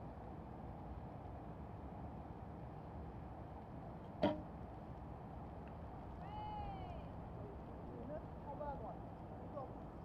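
A recurve bow shot: one sharp snap about four seconds in as the bowstring is released, over a steady background hum. About six and a half seconds in comes a short, arching animal call.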